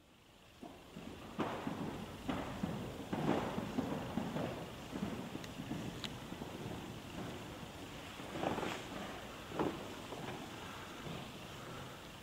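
Footsteps and scattered knocks echoing in a large church interior, at first about one step a second, then a few more knocks later on.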